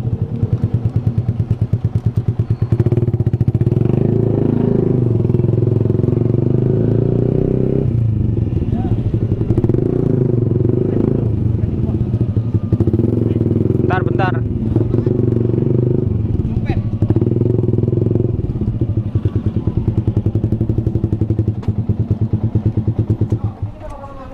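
Yamaha motorcycle engine idling, then pulling away and running at low speed, with a short rise in pitch as it moves off. The engine is switched off near the end.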